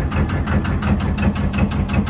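A narrowboat's diesel engine running steadily with an even beat while the boat is under way.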